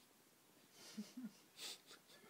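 A person breathing close to the microphone, quiet at first, then breathy exhales about a second in and again near the end, with two brief murmured voice sounds between them.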